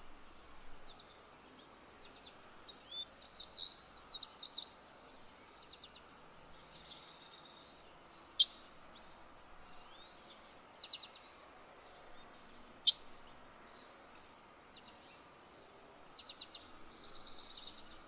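Birds chirping and calling over a faint steady outdoor background, with a burst of quick chirps about three to five seconds in and two sharp, brief clicks later on.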